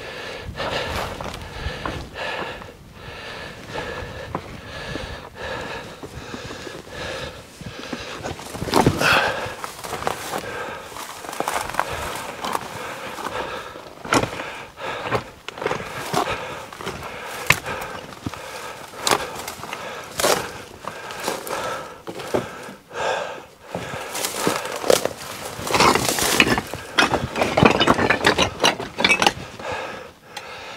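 Footsteps scuffing and crunching over rock and loose stones while dry brush crackles and snaps against clothing and the camera, in an irregular run of clicks and rustles that grows busier near the end.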